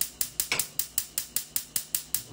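Gas stove burner's spark igniter clicking rapidly and evenly, about five clicks a second.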